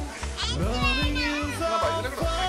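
Young children's high voices calling out and chattering over background music with a steady low beat.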